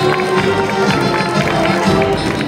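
Marching music played with held wind tones and regular beats, over the footsteps of a column of marchers.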